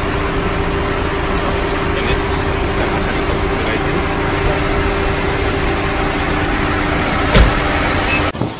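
A car engine idling, a steady hum under a dense noise of traffic and street. A sharp knock about seven seconds in is the loudest sound.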